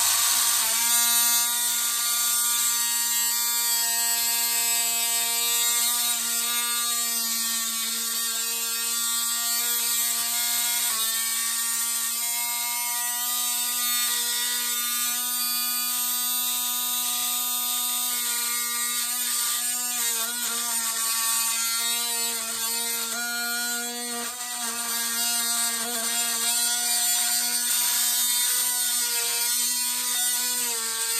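Cordless Milwaukee M12 impact driver hammering steadily on a seized screw that won't turn, its pitch dipping briefly a few times.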